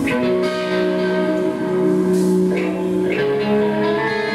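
Rock band playing live: electric guitars holding sustained chords over drums and cymbals, an instrumental passage without singing.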